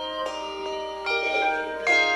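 Handbell choir ringing a piece: three chords of several bells struck together, each left to ring on into the next.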